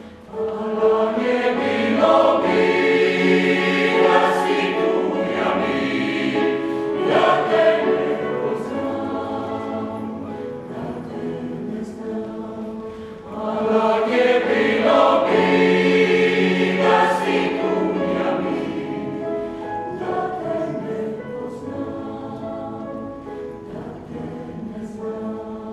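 Mixed choir of men's and women's voices singing in harmony. Two long phrases each swell in loudly and then slowly fade, the second starting about halfway through.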